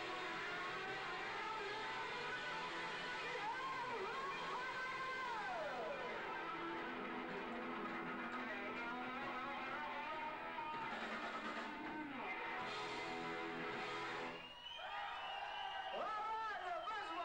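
Live rock band playing loud, with a distorted electric guitar playing lead, including string bends that rise and fall in pitch. The sound dips briefly and changes near the end.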